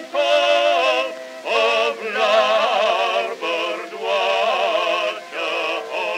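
Two men singing a sentimental song in duet with vibrato, from a 1910 Edison Amberol wax cylinder record, the phrases breaking off briefly about every one and a half to two seconds.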